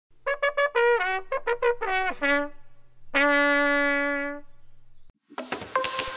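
Short trumpet jingle: a quick run of short notes, the last few bending downward in pitch, then one long held note that fades out. Electronic music starts just before the end.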